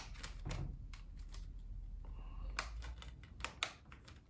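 An irregular string of small plastic clicks and taps from a Blu-ray case as a disc is handled and pressed onto the case's centre hub.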